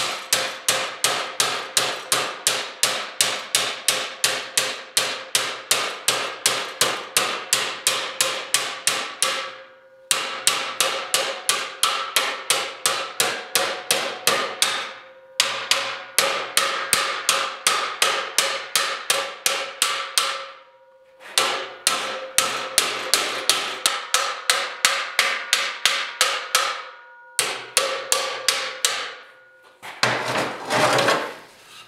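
Ball-peen hammer striking the edge of steel checker plate clamped over angle iron, folding the edge down. The blows come at about four a second in five runs with short pauses between them, and the plate rings with each blow.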